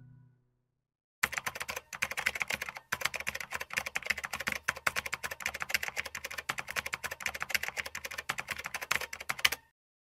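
Typing sound effect: fast, continuous keyboard-style clicking that starts about a second in and stops just before the end, with two short breaks early on, as text is typed out on screen. Before it, the tail of an acoustic guitar song fades out.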